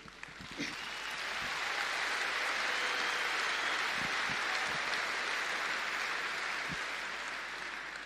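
A large audience applauding, the clapping building over the first couple of seconds, holding, then tapering off near the end.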